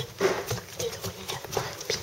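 Irregular knocks and rubbing from a phone being handled close against skin and clothing.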